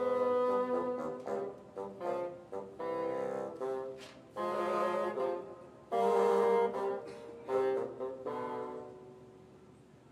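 Two bassoons playing a duet in short phrases of separate notes, the loudest phrase about six seconds in, dying away near the end.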